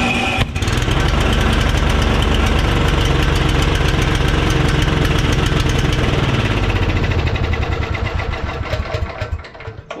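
Briggs & Stratton 12 hp Intek OHV single-cylinder snowblower engine firing up and running fast and steady with a rapid even beat. It now runs under its own power because the rocker arm is reattached, so the valves open and compression is restored. Over the last few seconds it slows and fades.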